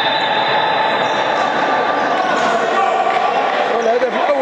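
Futsal ball bouncing and being kicked on a wooden indoor court, heard in a large hall over a steady hiss and hum.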